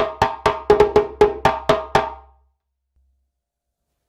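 Djembe played with bare hands: a quick run of about a dozen sharp tone and slap strokes with the hands alternating. It stops about two seconds in.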